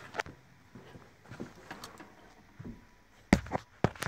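Footsteps and small handling noises as someone climbs into a pickup's cab, with two sharp knocks about half a second apart near the end.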